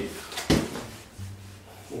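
A single sharp knock about half a second in, followed by quiet room tone with a faint low hum.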